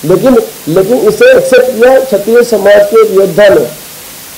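A man speaking into a microphone, loud, over a steady hiss, with a short pause about half a second in.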